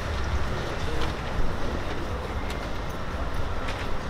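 Steady low rumble of street traffic, with a vehicle going by.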